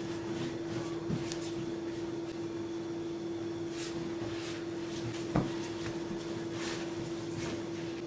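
Hands kneading soft yeast dough on a tabletop: faint, irregular pressing and patting strokes, with one sharper knock about five seconds in. A steady hum runs underneath.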